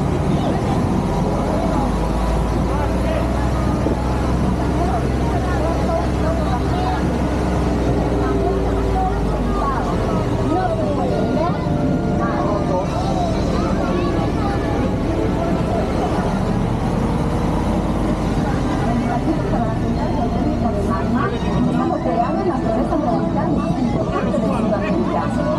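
Ride truck's engine running steadily as the carriage drives slowly, its low hum easing after about ten seconds, with riders talking over it throughout.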